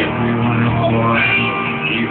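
Live rock band playing, with electric guitar to the fore.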